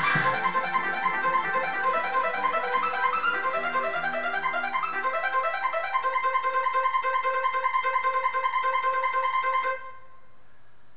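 Casio CTK-7000 keyboard playing a fast arpeggiated trance pattern of rapidly repeating synth notes. A held high note joins about six seconds in, and the music stops abruptly just before the end.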